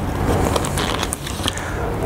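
Paper rustling and crackling as a folded quick-start leaflet is handled and unfolded, over a low rumble.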